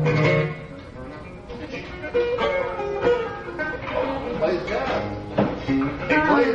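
A live band's held chord, with electric guitar and a low sustained note, rings out and stops about half a second in. Scattered guitar notes and voices follow between songs.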